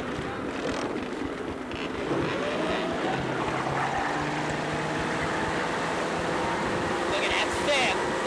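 Towing motorboat's engine opening up to pull a water skier from the water: it rises in pitch about two seconds in and then holds a steady drone, over wind on the microphone and rushing water.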